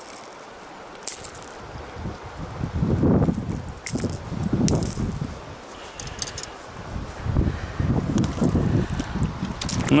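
A lure's hooks being worked out of a lenok's mouth by hand: a few light metallic clicks and rattles over uneven rumbling from hand movement close to the camera microphone.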